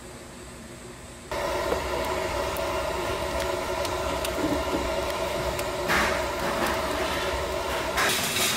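Handheld gas torch firing into firewood in a grill's firebox: a steady rushing burn that starts suddenly just over a second in, with faint crackles from the kindling wood.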